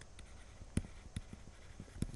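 Stylus tapping and scratching on a drawing tablet while writing: a few faint clicks, the sharpest just under a second in.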